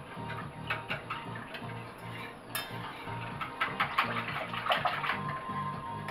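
A wire whisk clinking and scraping against the sides of an enamel pot as a liquid mixture is beaten, in quick runs of light strokes that grow busier about halfway through. Background music with a steady beat plays underneath.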